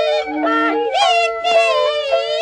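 Beiguan luantan opera music: a sung line sliding between notes over held melody notes from the accompanying instruments, with a single sharp percussion strike about one and a half seconds in.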